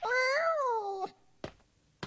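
A cat meowing once, a cartoon voice about a second long that rises and then falls in pitch.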